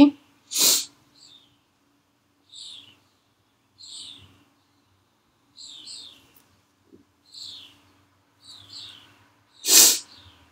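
A small bird chirping, a short high call that falls in pitch, often doubled, repeated about every second and a half. Two short, louder breathy bursts come, one just after the start and one near the end.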